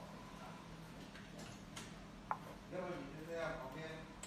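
A single sharp click a little past halfway, followed by indistinct voices talking in the background, over a steady low hum.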